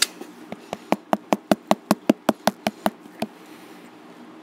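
A quick, even run of about a dozen sharp taps, roughly five a second, starting about half a second in and stopping a little after three seconds.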